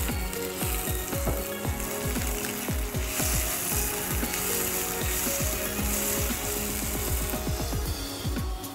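Spatula scraping and knocking rapidly and irregularly against a non-stick pan while onions and chopped tomato are stirred and fry. The frying sizzle is louder from about three seconds in until near the end.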